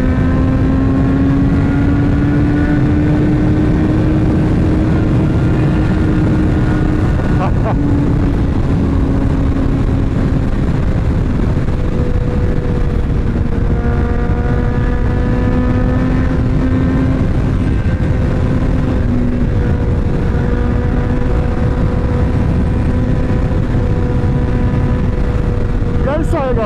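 Sport motorcycle's inline-four engine running at a steady highway cruise, its pitch drifting slightly, under heavy wind rush. A single sharp click comes about seven and a half seconds in.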